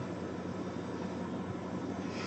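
Steady background hiss and low hum, room tone with no distinct handling sounds.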